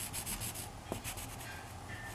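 Red felt-tip marker scratching over a textured painted wall in quick back-and-forth colouring strokes, about seven a second, that stop after the first half-second or so. A single sharp click comes about a second in.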